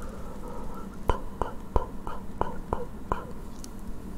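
ASMR mouth sounds made into cupped hands close to the microphone: soft breathing for the first second, then seven sharp clicks about three a second.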